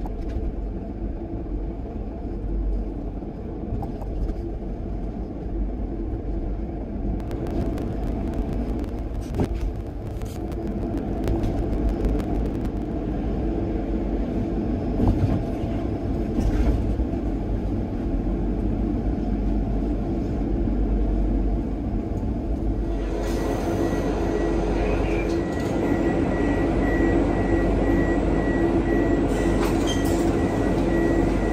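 Car driving slowly through the enclosed car-carrying wagons of the Eurotunnel Shuttle: a low engine and tyre rumble, with scattered clicks and knocks in the middle. About 23 seconds in, a louder steady hum with a thin high whine sets in and holds.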